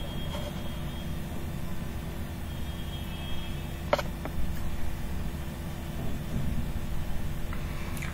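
Steady low background rumble with a faint constant hum, and a single sharp click about four seconds in.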